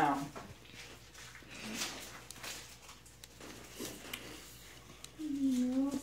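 A young child whimpering softly in short, faint sounds, with a longer whine near the end, while her stitches are being removed.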